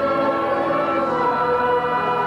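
A choir singing a hymn in long, held notes.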